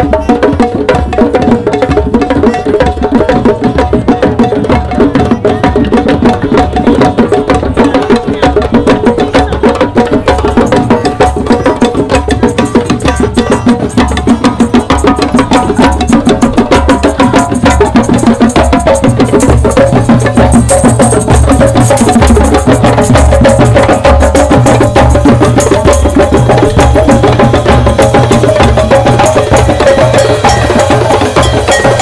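Drum circle of many hand drums and stick-struck drums, including congas, playing together in a loud, dense, steady rhythm of rapid strokes.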